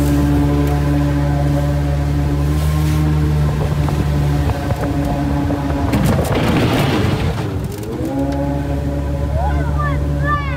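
A 125 hp outboard jet motor pushing a flat-bottom riveted jet boat, running steadily under way. About six seconds in, a rough rushing noise takes over for a second or so and the engine's tone fades, then the engine comes back and climbs in pitch near the end.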